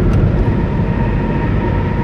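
A car's road noise heard from inside the cabin while driving on a concrete motorway: a steady low rumble of tyres and engine.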